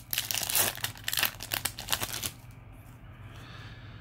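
Foil Yu-Gi-Oh! booster pack wrapper crinkling and tearing as it is opened by hand, a dense crackle for about two seconds that then dies down to quieter handling.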